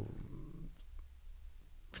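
A man's hesitant 'uh' trailing off into a low creak of the voice, then a pause with faint room tone and a low hum.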